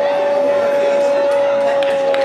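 A fan's horn held in one long, steady note over crowd noise and scattered claps and shouts as a goal is celebrated.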